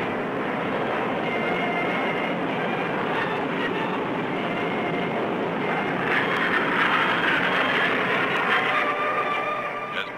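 The jet engines of a Northrop YB-49 flying wing, eight Allison J35 turbojets, in a low flyby: a steady rushing noise with a thin whine over it, growing louder about six seconds in as the plane passes close, then easing a little near the end.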